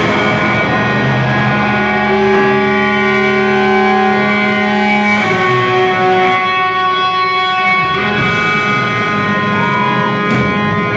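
Live rock band music led by electric guitars holding long sustained notes and chords, which shift to new notes every two to three seconds.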